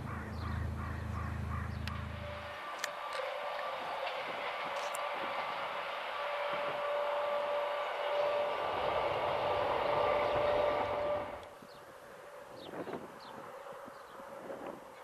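A Rhaetian Railway electric train running along the track: a steady rolling noise with a hum of two steady tones, loudest just before it cuts off sharply about three seconds from the end. A low rumble in the first seconds stops abruptly, and birds call after the train sound ends.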